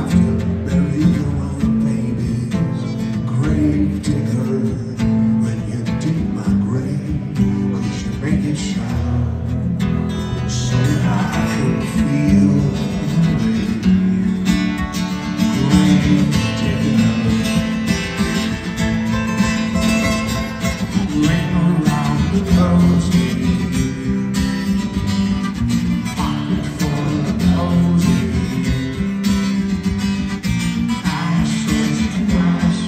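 Two acoustic guitars playing an instrumental passage together live, with no singing.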